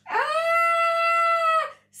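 A woman's long, high-pitched "Ah!" held at one steady pitch for about a second and a half, then cut off. It is a playful, acted scream of fright at spiders during a read-aloud story.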